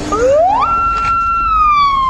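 A loud siren that rises quickly in pitch, holds a steady high tone for about a second, then begins slowly falling.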